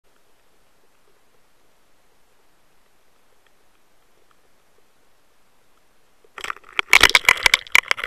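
Faint underwater hiss from a camera trailing a trolled lure, then about six seconds in a sudden rapid clatter of loud knocks and rattles as a pike strikes the lure and jerks the line-mounted camera.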